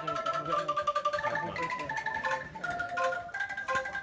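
Bamboo angklung being shaken to play a simple tune: each note is a fast, even rattle of tuned bamboo tubes, and the pitch moves to a new note about every half second.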